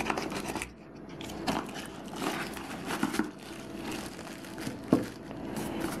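Paperboard packaging and a plastic bag being handled: the flap of a small cardboard box is opened and a tripod in a plastic bag is slid out, with uneven crinkling and rustling and a few sharp clicks.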